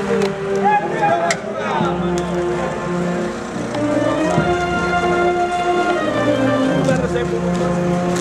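A band playing a slow tune in long held notes, with a low bass part coming in about two seconds in, over the talk of a crowd.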